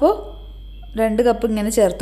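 Speech: a woman talking, with a pause of under a second about a quarter of the way in.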